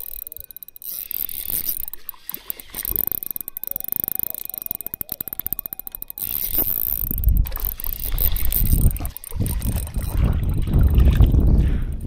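Daiwa TD Black MQ spinning reel cranked fast, its gears giving a rapid even clicking, as a hooked redfin is reeled in. About six seconds in the clicking stops and a low rumble on the microphone takes over.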